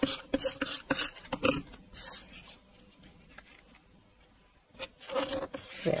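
Paper and photos being handled and pressed down onto patterned paper on a tabletop: a run of small clicks and rubbing scrapes over the first couple of seconds, then quieter.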